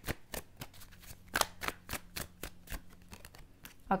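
A deck of tarot cards being shuffled by hand: an irregular run of sharp, soft card snaps, about three or four a second.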